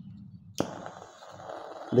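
A lighter clicks about half a second in, and then a steady hiss follows as the jet of acetylene gas from the calcium carbide and water reaction burns at the tip of a drip-set needle.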